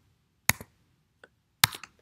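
A few computer keyboard keystrokes: a single sharp click about half a second in, a faint one a little later and a quick cluster of clicks near the end.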